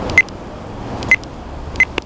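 A handheld Oregon Scientific weather radio beeping: three short, high beeps, each with a faint click, spaced under a second apart.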